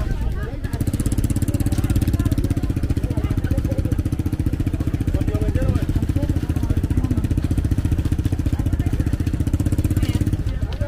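An engine idling steadily and loudly, setting in about a second in, with people talking over it.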